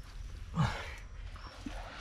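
A man's short strained grunt with a falling pitch, about half a second in, from the effort of reaching arm-deep into a mud crab burrow.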